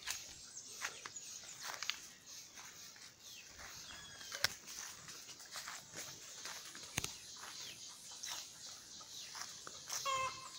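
Quiet outdoor ambience: birds chirping on and off, with footsteps in the yard and two sharp clicks from handling of the phone.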